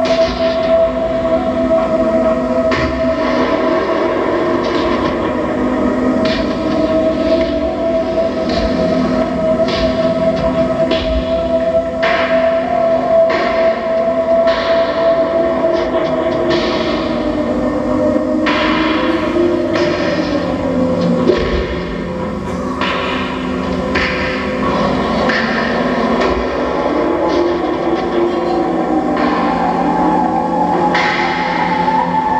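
Experimental electronic drone music played live: a steady high drone held for most of the time over a wavering lower tone, with short hissing noises cutting in at irregular intervals. The texture shifts and the loudness dips about two-thirds of the way through.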